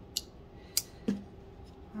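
Two sharp clicks about half a second apart as small folding knives are handled.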